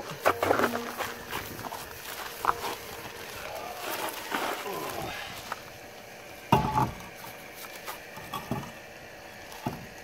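A steel wheel with a snow tire being handled and fitted onto a car's hub studs: scattered scrapes and knocks, with one loud thud about two thirds of the way through.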